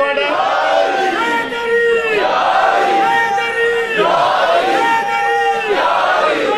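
A crowd of men shouting religious slogans together, led by one man, in a run of long, held shouts that follow one another about every second.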